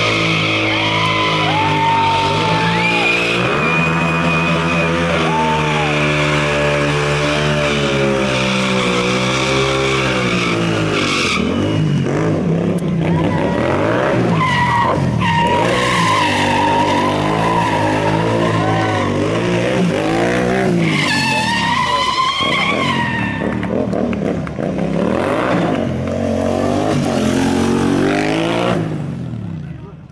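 Motorcycle burnout: the engine revved hard and held high, its pitch rising and falling, while the rear tyre spins and screeches on the asphalt. The sound drops away just before the end.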